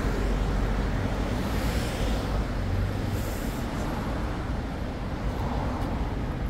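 Steady city traffic noise from passing cars, a low rumble of engines and tyres, with a brief high hiss about three seconds in.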